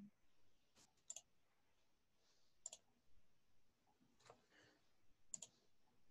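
Faint computer mouse clicks, a few singles and several quick double-clicks spread over a few seconds, against near silence.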